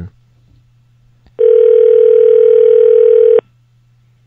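Telephone ringback tone heard over a phone line as an outgoing call rings: a click just over a second in, then one steady two-second ring tone that stops sharply, over a faint low line hum.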